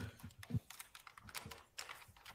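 Faint, irregular typing on a laptop keyboard, a scatter of light key clicks.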